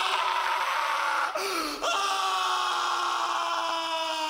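A man's long, drawn-out scream from an English anime dub, taken in two breaths, the second sliding slowly lower in pitch: a villain's hammy dying scream.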